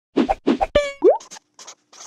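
Cartoon-style sound effects for an animated title intro. Two quick plops come first, then a short ringing note, a fast rising boing, and a run of short hissy ticks as the letters pop in.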